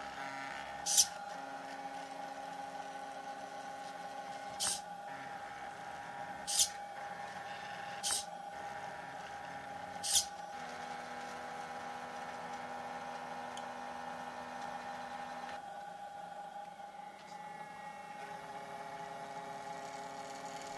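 Stepper motors of a small DIY sphere plotter running as it draws on a Christmas bauble: a steady high whine, with lower motor tones starting and stopping as the axes move. About five short sharp clicks come through the first half.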